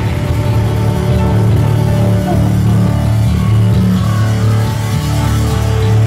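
A rock band playing live at practice, with held low bass notes and keyboard carrying the sound and little drumming in this stretch.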